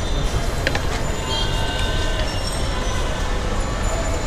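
Steady rumbling street noise with thin, high squealing tones running through it, and a metal spoon clinking against a steel serving bowl about half a second in.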